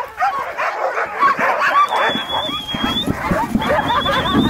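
A team of harnessed sled dogs barking and yipping, many overlapping yelps at once, with one long high whine held for about a second near the middle.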